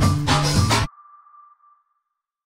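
Outro music with a steady beat that cuts off suddenly about a second in, leaving one high ringing tone that fades away.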